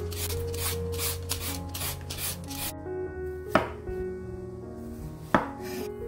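Vegetable peeler scraping the tough skin off an old yellow cucumber in quick, even strokes, about three a second. After a couple of seconds the strokes stop, and a kitchen knife knocks sharply on a wooden cutting board twice.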